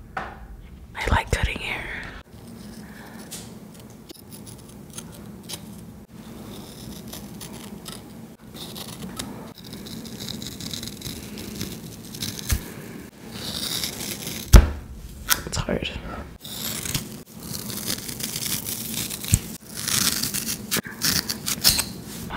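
Scissors snipping through bundles of synthetic braiding hair close to the microphone: crisp, crunchy cuts, sparse at first and coming thick and fast in the second half, over a faint steady hum.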